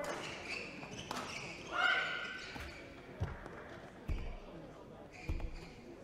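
Badminton rally heard faintly in a large hall: a few sharp racket strikes on the shuttlecock and low thuds of footfalls on the court, spaced a second or so apart.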